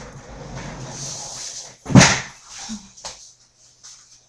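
Rustling and shuffling as a person gets up and moves back from the desk. About two seconds in there is one loud thump, and a lighter knock follows about a second later.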